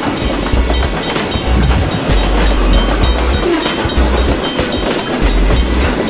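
Peacekeeper Rail Garrison test train's cars rolling past: steady rolling noise with the wheels clicking over rail joints and a deep rumble that comes and goes.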